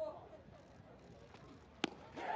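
Faint ballpark background, then one sharp pop near the end: a breaking ball smacking into the catcher's mitt on a swing and miss.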